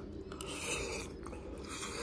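A person chewing a mouthful of champorado, a soft chocolate rice porridge, taken off a metal spoon: quiet, wet mouth sounds.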